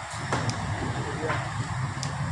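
Swollen, muddy river rushing in flood: a steady noise of fast-moving water with a low rumble underneath and faint voices in the background.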